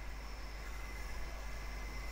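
Quiet room tone: a steady faint hiss over a low hum, with no distinct event.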